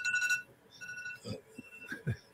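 A high-pitched steady tone sounding three times with short gaps, the first the longest and loudest.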